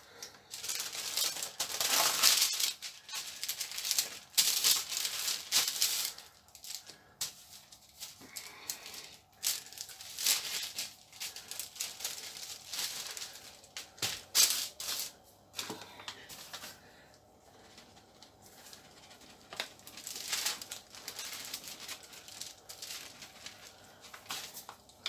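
A paper flour bag and baking paper rustling and crinkling in irregular bursts as flour is shaken over bread dough and the dough is handled on the paper. The bursts are busiest in the first few seconds and again around the middle.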